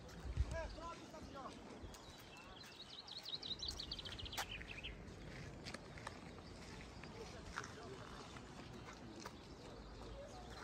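A small songbird sings a fast trill of high chirps lasting about two seconds, a few seconds in, over faint distant voices. A brief low rumble comes near the start.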